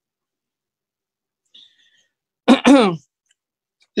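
A person clears their throat once, a short voiced 'ahem' in two quick parts, falling in pitch, about two and a half seconds in, after a stretch of dead silence.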